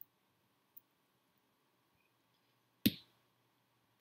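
A small tactile pushbutton on a breadboard pressed down once with a single short, sharp click about three seconds in, the press that switches the LCD to 'switch ON'. Before it, just two faint ticks of fingers on the breadboard.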